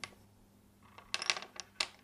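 A quick cluster of light clicks and taps about a second in: a pencil, a metal ring and sticks of chalk being moved and set down on a wooden tabletop.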